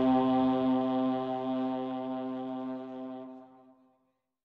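Music: a held brass note or chord, steady in pitch, fading away over about three seconds and cutting off shortly before the end.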